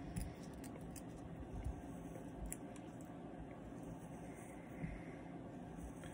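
Faint handling sounds: light scratchy rustling and a few small clicks as the synthetic fibres of a streamer fly in a tying vise are combed and stroked straight, over a low steady room hum.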